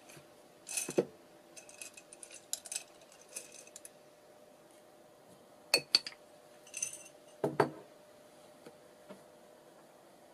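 Small hard embellishments, buttons among them, clinking and rattling against one another and a container as they are picked through. There are scattered light clicks with brief ringing, a few sharper clicks about six seconds in, and a couple of knocks as one is set down.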